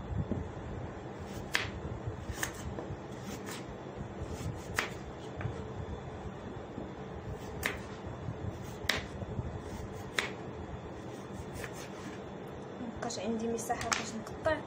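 Kitchen knife cutting through raw carrots and knocking on a wooden cutting board. Single sharp knocks come about once every second or so, at an uneven pace, over a steady low hum.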